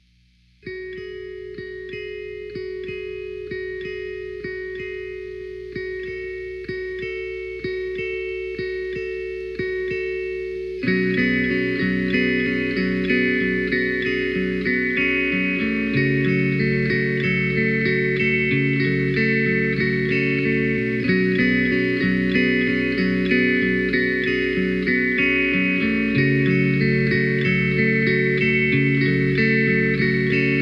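Instrumental ambient guitar music: a picked guitar pattern of high notes starts about a second in, and a louder, fuller layer of lower guitar notes joins about ten seconds later.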